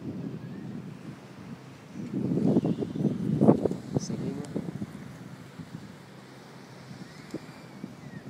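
Wind buffeting a phone's microphone on a rocky seashore, with a louder, rumbling stretch of buffeting about two to four seconds in before it settles to a steady low rush.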